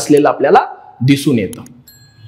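A man talking in a lecture, with a short, high electronic beep near the end.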